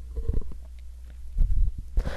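Low steady hum from a poor-quality microphone, with faint low rumbles and a few soft clicks.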